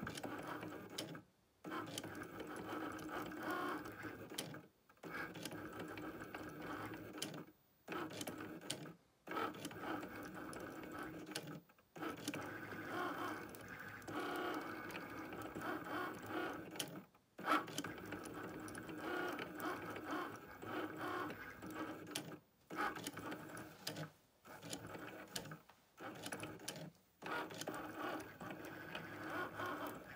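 Cricut cutting machine's motors whirring as the carriage drives the Foil Quill across foil, in runs of a few seconds broken by brief stops where the motors fall silent. A single sharp click about halfway through.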